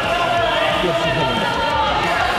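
Indistinct voices of several people talking and calling out, with no clear words.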